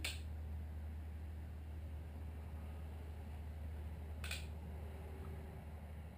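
Two short, light clicks, one at the start and one about four seconds in, over a steady low hum: a snap ring being worked into its groove in a 47 mm Showa motorcycle fork tube by hand.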